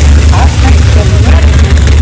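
Loud, steady low rumble of drag-race car engines at the starting line, with indistinct voices over it.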